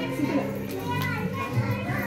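Young children's voices chattering and calling out over background music.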